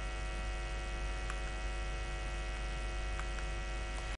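Steady electrical mains hum: a low drone with a stack of steady higher tones above it, and two faint ticks, about a second in and near the end.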